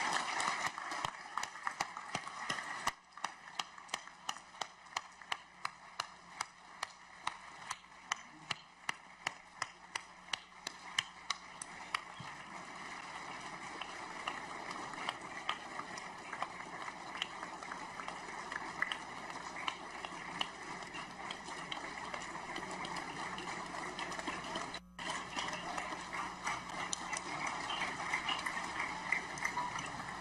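A large audience applauding in a high-ceilinged hall: first scattered clapping, then a few seconds of clapping in unison at about two claps a second, which dissolves into sustained ordinary applause.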